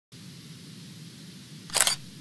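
Faint steady low hum, then one short, sharp swish-like sound effect near the end as the intro logo appears.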